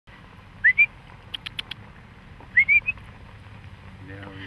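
A person whistling a short phrase of rising notes, twice, with four quick sharp clicks in between.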